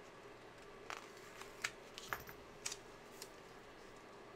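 Faint paper handling: a few light clicks and crackles as a sticker is peeled from a sticker-book sheet and pressed down onto a planner page.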